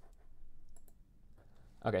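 A few faint, quick computer mouse clicks.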